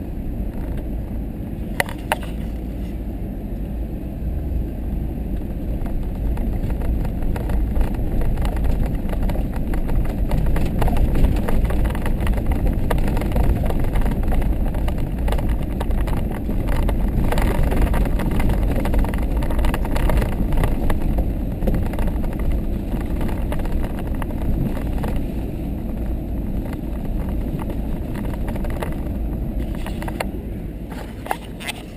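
A vehicle driving slowly over a rough dirt trail, heard from inside the cab: a steady low rumble of engine and tyres, with a few sharp knocks and rattles.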